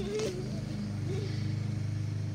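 A steady low motor hum, like an engine running, with a child laughing briefly at the start and again about a second in.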